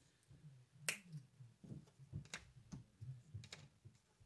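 A few faint, sharp clicks and light taps as craft supplies are handled: a small plastic acrylic paint bottle and thin wooden egg cutouts being set down on a paper plate. The sharpest click comes about a second in, with a few more over the next two and a half seconds.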